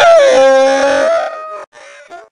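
A man's loud scream, held on one pitch for about a second after a short downward slide, then fading and breaking off about one and a half seconds in.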